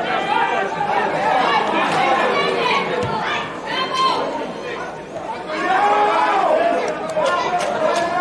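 Several men's voices shouting and calling out, overlapping, in a mostly empty football stadium: players and bench calling to each other during play, with the calls echoing off the empty stands.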